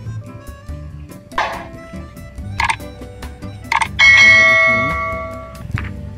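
Background music with a steady beat. About four seconds in comes a loud bell-like chime of several ringing tones that fades out over about a second: the notification-bell 'ding' sound effect of a subscribe-button overlay.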